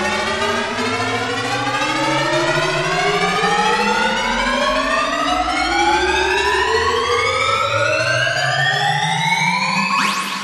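Software modular synthesizer patch in VCV Rack, a Quantussy Cell ring modulating Elements synth voices: a bright, overtone-rich tone glides steadily upward in pitch, siren-like, over a low steady drone.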